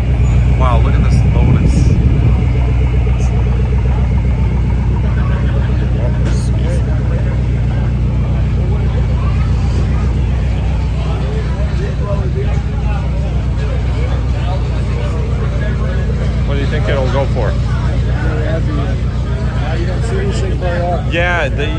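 An engine idling steadily at an even speed, with people chatting in the background.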